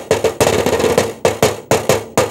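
Drum-style percussion: a fast roll of sharp strikes that thins out into separate hits, about three or four a second.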